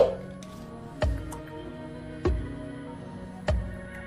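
Background music with a slow, steady beat, about one beat every second and a quarter, over sustained tones.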